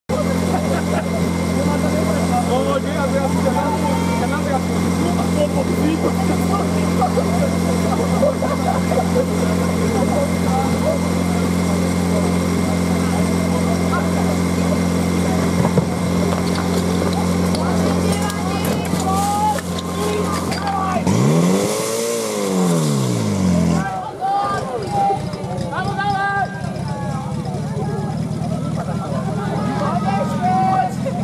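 Portable fire-sport pump engine idling steadily, then about 21 seconds in revving up sharply and falling back over a few seconds as the pump is brought into work, after which it runs on steadily under load. Shouting voices go on over the engine throughout.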